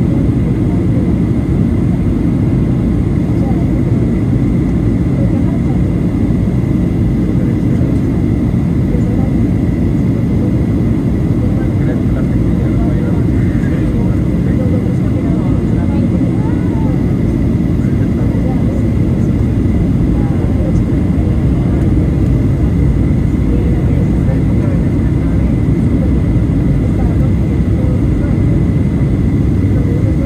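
Steady cabin noise of a Boeing 737-800 in flight, heard from a seat over the wing: a deep rumble of its CFM56 engines and airflow, with a thin steady whine above it.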